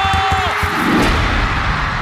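Intro jingle: music with a heavy low beat and a cheering crowd mixed in, a held tone cutting off about half a second in, the whole mix fading toward the end.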